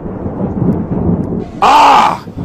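A loud low rumbling noise for about a second and a half, then a man's loud drawn-out cry of 'Oh' near the end.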